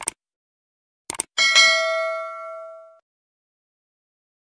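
Subscribe-button animation sound effects: a quick double click at the start and two more clicks about a second in, then a bell ding that rings and fades out over about a second and a half.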